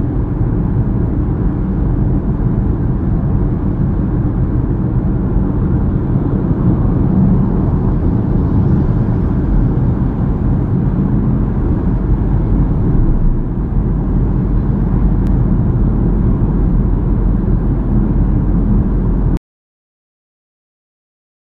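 Steady road and engine noise heard inside a car's cabin while cruising on a highway, a deep rumble heaviest in the low end. It cuts off suddenly just before the end.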